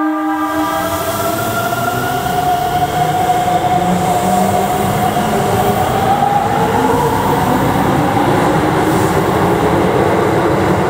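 Keikyu 600 series electric train's horn ending about half a second in, then the train pulling away, its motors whining in a slowly rising pitch over the steady rumble of the cars on the rails.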